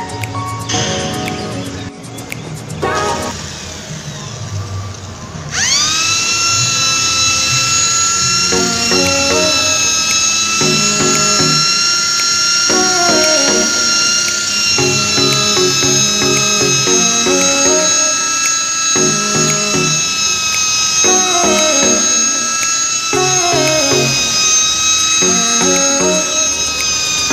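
Electric polisher with a felt pad spinning up about five seconds in, its motor whine rising quickly to speed and then running steadily, as it buffs wiper scratches out of car windscreen glass with polishing compound. Background music plays throughout.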